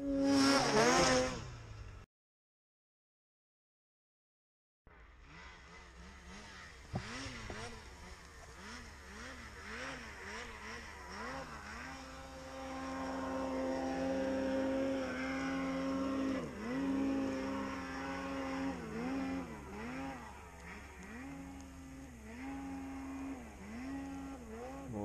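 Snowmobile engines running and revving, their pitch swinging up and down again and again as throttles are worked, with a steadier held note for a few seconds in the middle. A short loud burst opens, then a gap of silence before the engines come in about five seconds in.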